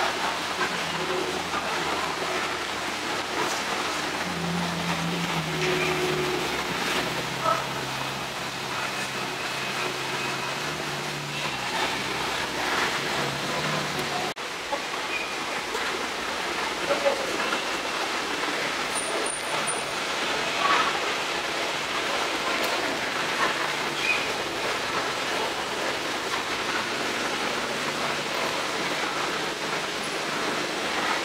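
A Ferrari 458 Italia's V8 and then, after a cut about halfway through, a Ferrari 599 GTB's V12 rolling past at walking pace, running low and steady with no revving, under background crowd chatter.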